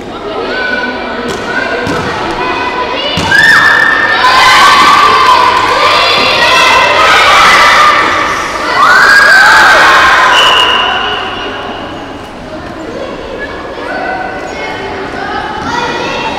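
Children shouting and cheering from the sidelines of a netball game, loudest and most excited from about three to eleven seconds in, with a few thuds on the court.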